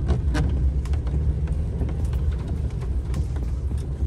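Camper van driving slowly on a wet road, heard from inside the cab: a steady low engine and road rumble with scattered light taps.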